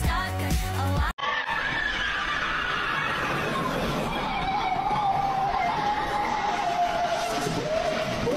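About a second of pop music with a beat, cut off abruptly. It is followed by a loud, noisy rush carrying one long wail that falls slowly in pitch, a distorted sound effect.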